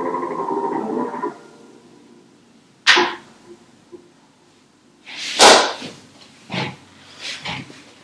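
An electronic synth tone of several pitches, driven by a hand moving over a distance sensor, sounds for about a second and then stops. After it come several short, sudden noisy swishes, the loudest about halfway through.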